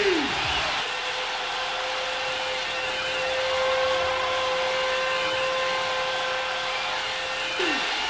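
Large arena crowd roaring, a steady wash of noise, with a steady tone held from about a second in until near the end.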